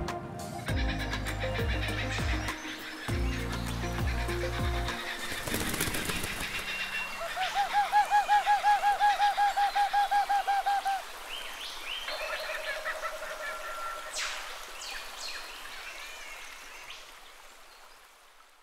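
Closing background music fades out over the first few seconds, giving way to a bush soundscape of bird calls. A loud, rapid run of repeated call notes, about five a second, lasts from about seven to eleven seconds in, and is followed by scattered short chirps that fade out near the end.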